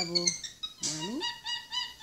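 A monkey's high-pitched squeaking calls: a short rising cry about a second in, then a quick run of short squeaks.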